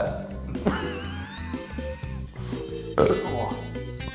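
A man belching loudly for about a second and a half, starting about a second in. The belch brings up the taste of the surströmming (fermented Baltic herring) he has just eaten.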